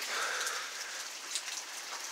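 Heavy rain pouring, a steady even hiss of rain falling on the ground.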